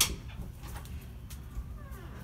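A sharp click right at the start, then a few faint clicks over a low rumble of room noise, and a short high-pitched gliding cry near the end.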